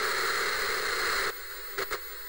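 Television static hiss, loud for just over a second, then dropping to a quieter steady hiss with a brief crackle near the end.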